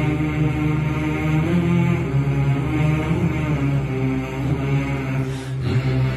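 Islamic devotional chanting of a salawat: low voices singing a slow melody in long, drawn-out held notes, without clear words.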